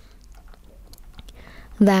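A quiet pause in a woman's narration with faint mouth clicks and a soft intake of breath. She starts speaking again near the end.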